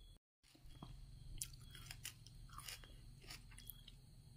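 Faint, scattered crackles and clicks of a juicy watermelon slice being handled, its flesh broken with the fingers, over low room hum.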